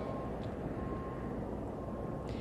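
Fire engines running at a fire scene, a steady low rumble of engines and pumps with a faint high tone that comes and goes.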